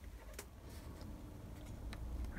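Two faint clicks against quiet room tone as a Hornby Mark 3 plastic model coach is handled, lifted from the track and turned over in the hand.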